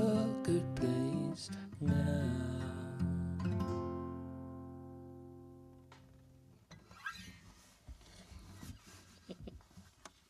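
Acoustic guitar strummed through the last bars of a song, ending on a final chord that rings on and fades away over a few seconds. Faint clicks and handling noise follow once it has died out.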